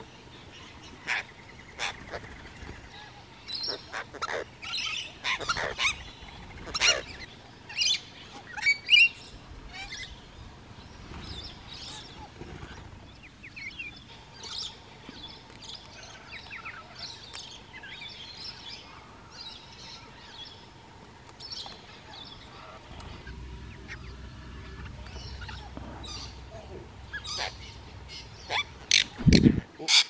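Rainbow lorikeets giving short, harsh screeching calls and chatter, many in quick succession in the first ten seconds, sparser in the middle and bunching again near the end. There is a dull thump right at the end.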